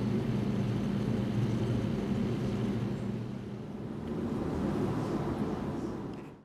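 Kubota RTV 900's three-cylinder diesel engine idling steadily, a low even hum.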